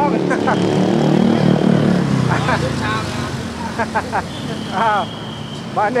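Street traffic: a vehicle engine passes close by, its pitch falling over the first three seconds or so, with voices talking over it.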